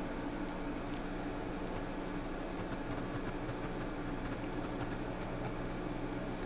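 Steady low hum of a Drake L4B linear amplifier running while keyed and being tuned, with faint light ticks about halfway through as the load knob is turned.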